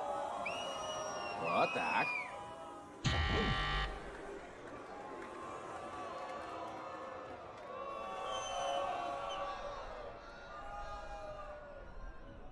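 A crowd whoops and whistles, then a talent-show judge's buzzer sounds about three seconds in, a harsh buzz lasting under a second. Soft music and crowd noise follow.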